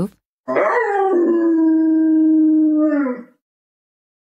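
A dog giving one long howl of about three seconds, rising at the start, held steady, then dropping in pitch as it ends.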